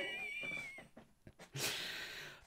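A single drawn-out, high-pitched meow-like call lasting just over a second, wavering slightly in pitch, then a short breathy sound near the end.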